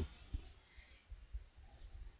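Faint room tone with a few soft, short clicks and low knocks, spread through the pause.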